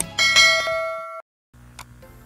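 A click followed by a bright bell-like ding of several ringing tones, which lasts about a second and cuts off suddenly. It is the notification-bell sound effect of a subscribe-button animation.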